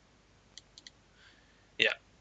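Three faint computer mouse clicks in quick succession, about half a second to a second in.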